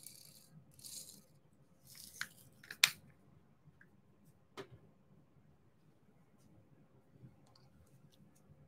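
Resin diamond-painting drills rattling briefly in a plastic tray, three short shakes, then a few light, sharp clicks, the loudest just under three seconds in.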